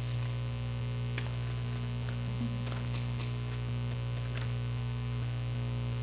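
Steady electrical mains hum on the audio feed, with a few faint clicks.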